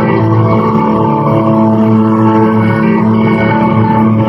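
A live country band playing loud through a concert PA, picked up from the crowd, with guitars holding long, sustained notes and chords.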